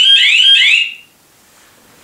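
Electronic alarm on a D-Mine BT-R400 training-IED control panel: a loud, rapidly repeating rising sweep, about four a second, that cuts off about a second in. The alarm signals that the training IED has been triggered, a simulated explosion.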